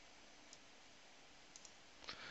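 Near silence: room tone with a few faint, short clicks, one about half a second in and a quick pair near the end.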